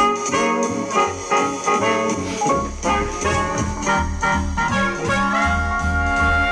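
Swing jazz music with brass instruments playing a melody over a bass line of separate low notes.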